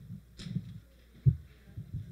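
Low dull thumps and knocks from a microphone being handled on its stand, with a cluster about half a second in and the sharpest, loudest knock a little past the middle.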